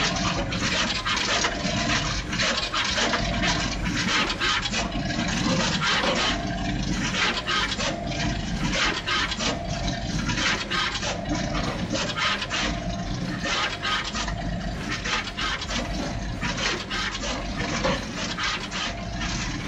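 Juki pick-and-place machine running at full production speed: fast, dense clicking from the moving placement head and its nozzles with a rushing air hiss over a steady hum, and a short tone that recurs every second or so.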